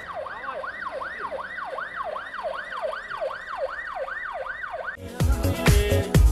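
Ambulance siren sounding a rapid rising-and-falling wail, about two and a half cycles a second. About five seconds in it cuts off and loud music with a steady beat starts.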